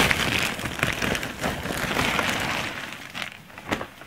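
Thin plastic sack rustling and crinkling as clothes are pulled out of it, loud at first and fading over the last second, with a couple of sharper crackles near the end.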